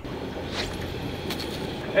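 A heavy catfish rod being cast from a boat, heard under a steady rushing noise with a few faint clicks.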